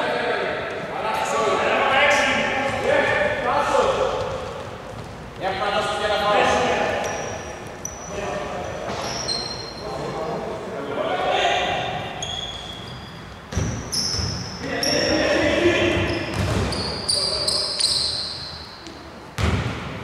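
Indistinct voices of players calling out, echoing in a large sports hall, with a basketball bouncing on the hardwood court now and then. There are short high squeaks, likely from sneakers on the floor.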